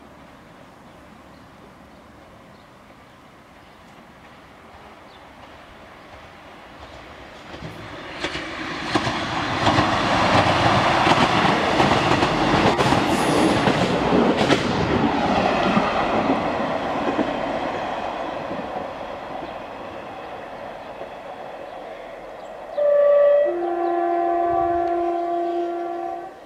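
ScotRail class 158 diesel multiple unit passing at speed: a rumble of engine and wheels on rail builds, peaks for several seconds and slowly fades as it draws away. Near the end the unit sounds its two-tone horn, a short higher note followed by a longer lower one.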